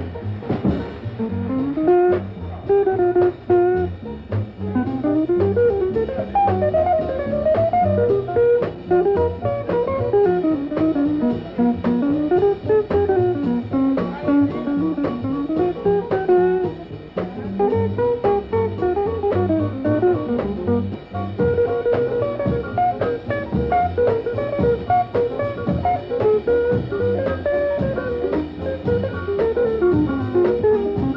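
Small jazz combo: a jazz guitar plays a fast single-note solo line that runs up and down in quick short notes, over bass and drums.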